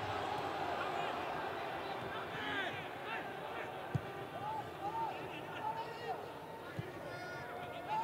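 Pitch-side sound of a football match in an empty stadium: distant shouts from players on the pitch over a low steady background, with no crowd noise. A ball is struck sharply twice, about four seconds in and again near seven seconds.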